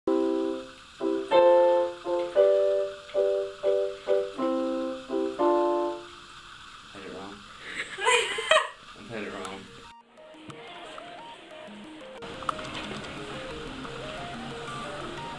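Portable digital keyboard played with its piano voice: a run of chords struck one after another for about six seconds, each ringing and fading. A voice follows, and from about ten seconds a soft melody of single notes plays.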